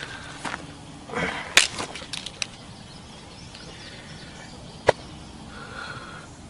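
A man groaning briefly in pain after accidentally shooting himself, with a few light clicks. Near the five-second mark there is one sharp crack.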